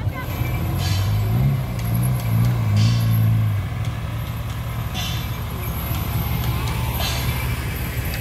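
Engine of a pickup truck running at low speed as it passes close. Voices and music sound behind it, and short hisses come about every two seconds.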